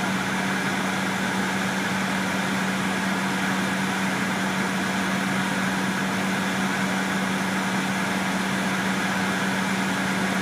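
Engine of a 2006 MCI D4500CL coach idling, heard from inside the passenger cabin: a steady low hum over an even hiss.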